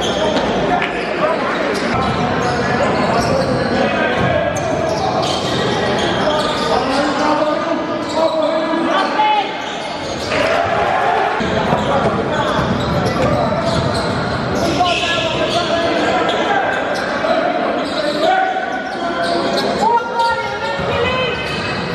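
Live sound of an indoor basketball game: the ball bouncing on the hardwood court amid players' and spectators' shouting, echoing in a large gym hall.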